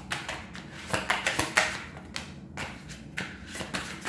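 Tarot cards being shuffled and handled, a quick irregular run of card flicks and taps, loudest about a second and a half in.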